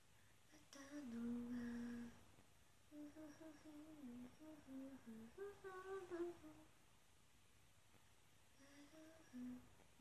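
A woman humming a tune quietly, in three short melodic phrases with pauses between them.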